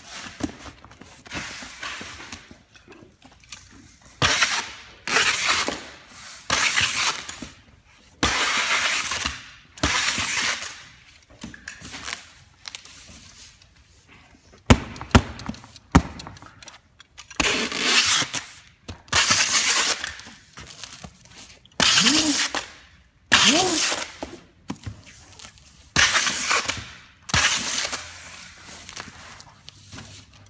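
Clear packing tape being pulled off the roll and laid over the seams of a cardboard box: a long series of harsh tearing rasps, each under a second, one every second or two. A few sharp knocks come near the middle, and a couple of strips squeal upward in pitch about two-thirds of the way through.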